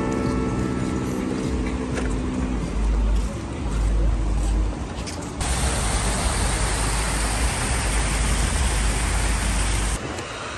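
A small rock waterfall splashing into a pool: an even rush of water that starts abruptly about five seconds in. Before it, a street at night with a low rumble and faint music that fades out.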